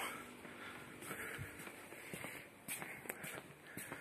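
Faint rustling with several light clicks and knocks, mostly in the second half: handling noise as a hanging pot of petunias is lifted down from its wire hanger.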